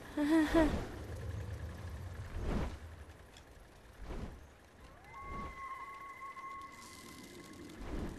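Wind rushing around small gliders flying through open sky, with several whooshes as they sweep past, after a short voice-like sound at the very start. From about five seconds in, a faint steady high tone is held for a couple of seconds.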